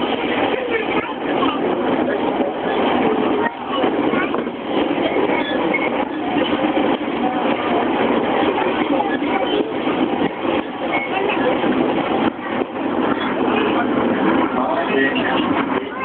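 Cabin noise inside a JR E231-series commuter train running at speed, a steady mix of running noise with indistinct voices over it.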